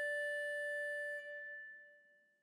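A single held wind-instrument note, the last note of the dance music, sounding steadily and then fading away from a little over a second in.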